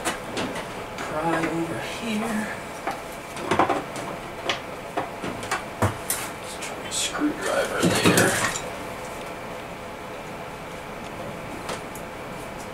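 Steel pry bar clinking and knocking against the cast-iron crankcase of a Kohler KT17 twin while the case halves are pried apart: a string of irregular metallic clinks and knocks, busiest around eight seconds in, then quieter from about nine seconds.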